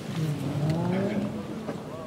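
A man's voice, the prayer leader's, calling out one long, drawn-out takbir, the cue for the congregation to go down into prostration.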